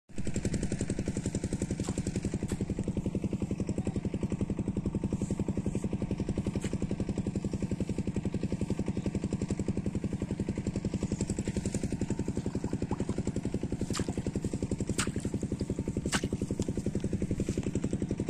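A small engine running steadily, with an even, rapid chugging beat, and a few sharp clicks in the last few seconds.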